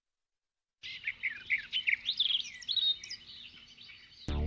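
Birds chirping in a quick, busy series of short twittering calls, starting about a second in after a moment of silence.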